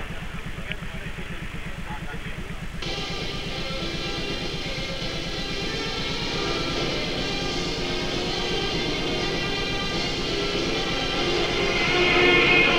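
Music playing under a steady low hum; about three seconds in the sound turns fuller and brighter.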